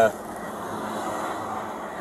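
Steady background road traffic noise, an even rumble and hiss, picked up by a police body camera's microphone at the roadside.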